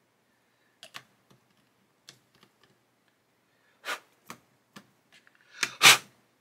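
Scattered small plastic clicks and taps as a bottle of liquid cement and its brush cap are handled. Near the end comes one louder, sharper clack as the bottle is set back into its plastic holder.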